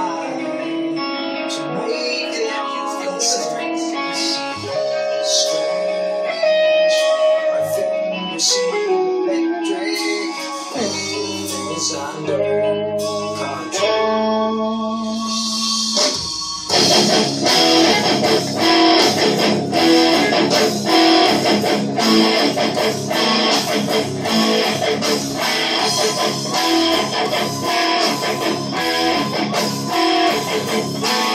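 Apple Horn electric guitar played solo through an amp: sparse single notes and chords at first, then, a little over halfway in, a louder, dense, fast-picked rhythmic riff.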